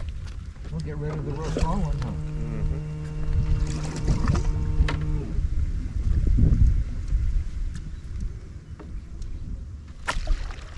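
Wind on the microphone and water around the hull of a bass boat, with a steady low hum from about one second in until about five seconds.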